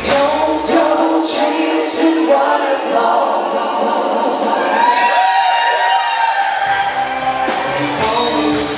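Live band with several singers holding sustained notes in harmony while the drums and bass drop out; the low end comes back in near the end.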